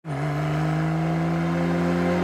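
Porsche 911 Carrera T's twin-turbo flat-six engine running at a steady speed, with tyre and road noise.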